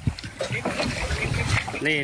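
Sea water splashing and sloshing against a boat's side as a green sea turtle caught in a net is handled at the surface, with a few short knocks.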